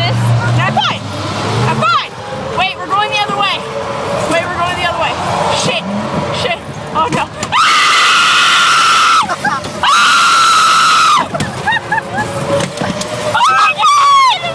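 Girls screaming on the Zipper carnival ride: a run of short shrieks and wails, then two long, high, held screams about eight and ten seconds in.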